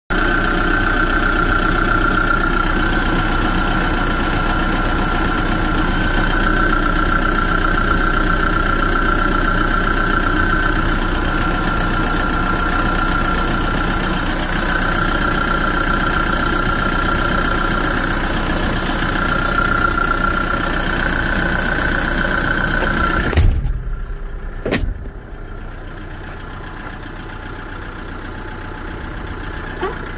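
Kia Bongo III truck engine idling with the engine hatch open, a high whine coming and going over it. About 23 seconds in, a sudden thump cuts the sound to a much quieter, muffled idle, with a click a second later as the engine cover is shut.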